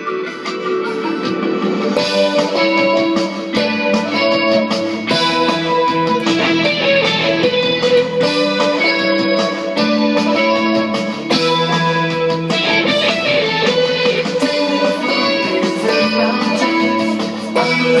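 A Fender Stratocaster electric guitar playing picked chords and melody lines through an amplifier. Deeper bass notes join about five seconds in.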